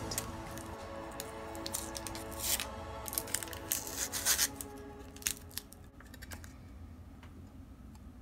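Clear plastic film being peeled off and handled, a string of short crinkly crackles and tearing sounds, over background music that fades out a little past the middle.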